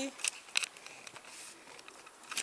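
Handling noise as a camera is moved and set in place: a few short clicks and rustles, the loudest two in the first second.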